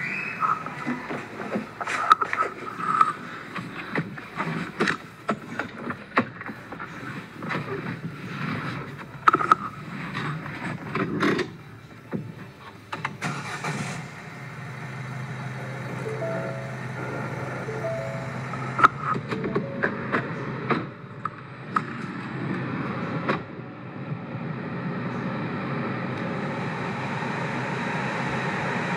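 Clicks and knocks of a car door and someone getting in. About halfway through, the Ford EcoSport's engine starts and settles to a steady idle. A steady rushing noise grows louder near the end.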